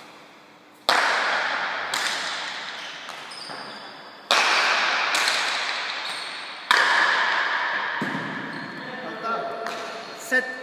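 Paleta cuir pelota rally: the leather ball is struck by wooden paletas and slams off the court walls. About six sharp cracks come one to two seconds apart, the loudest at about one, four and seven seconds in. Each crack rings on in the long echo of the large indoor court.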